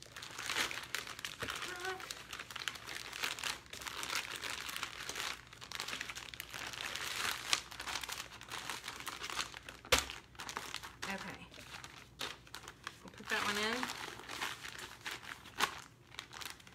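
Plastic being handled, crinkling and rustling continuously, with small ticks and one sharp click about ten seconds in.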